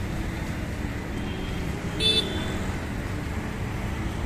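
Steady rumble of street traffic, with a short vehicle horn toot about two seconds in.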